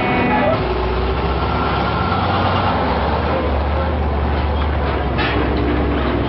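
Heavy military vehicles' engines running with a steady low rumble, with a few short knocks near the end.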